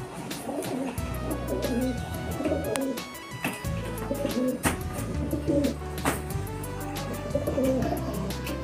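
Rock pigeons cooing while they fight, over background music with held bass notes.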